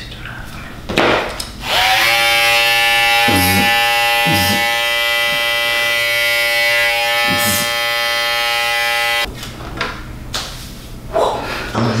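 Electric hair clippers switched on and buzzing steadily for about seven seconds, then switched off abruptly. A short knock comes just before they start.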